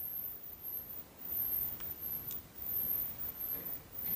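Quiet room tone with two faint ticks a moment apart in the middle.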